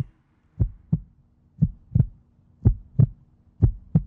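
Heartbeat sound effect: four double thumps, 'lub-dub', about one a second, low and even, over a faint steady hum.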